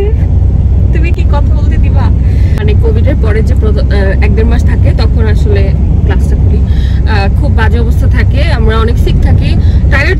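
Steady low road and engine rumble inside the cabin of a moving car, with people talking over it.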